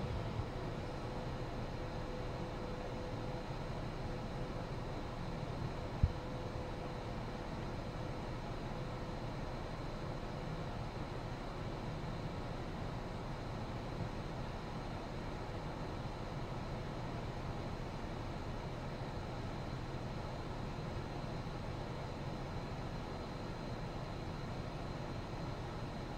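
Steady low hum of an SUV idling with its ventilation fan running, heard from inside the cabin. A single short click about six seconds in.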